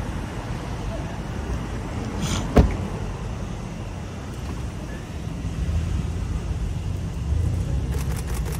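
Low, steady rumble of an idling car engine and street traffic, with one sharp knock about two and a half seconds in.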